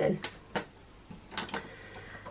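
A few light clicks and taps as hands handle a plastic ring binder and a desk calculator: one about half a second in, then two close together about a second and a half in.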